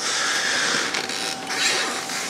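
Rustling handling noise as a plush toy and small toys are handled, steady for about a second and a half and then easing off.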